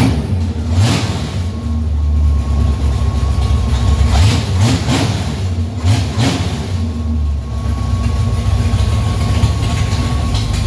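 1965 Ford Mustang's V8 running, freshly started for the first time in 15 years, with the throttle blipped by hand at the carburetor so the revs rise and fall about a second in and again twice around the middle. A faint thin whine comes and goes over the engine.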